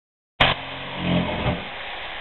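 A handheld power tool's motor starts abruptly, hums steadily and swells for about a second, then stops, as a pipe behind a toilet is cut.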